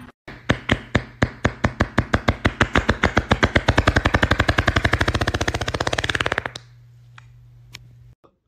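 A rapid series of sharp beats over a steady low hum, speeding up from about four to about ten a second, then stopping about six and a half seconds in; the hum runs on faintly and cuts off near the end.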